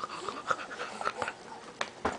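A baby being spoon-fed cereal, making quick, short breaths and wet mouth noises between mouthfuls, with a few light clicks.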